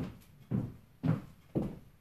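High-heeled shoes with 7-inch heels stepping on a hardwood floor, four footfalls at a steady walking pace of about two a second.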